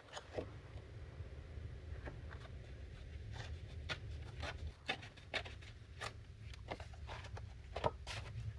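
Pink pearlescent cardstock being handled and torn by hand into a small strip: faint, scattered rustles and small crackles of paper.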